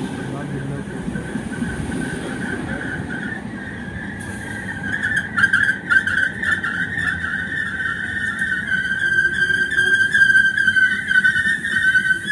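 London Overground Class 315 electric train pulling into the platform and slowing to a stop, with a steady high-pitched whine that wavers slightly. About four seconds in, a hiss and a run of sharp clicks join it as the train rolls slower.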